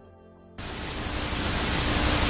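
Television static hiss that cuts in suddenly about half a second in and grows slowly louder, with a faint steady hum beneath it.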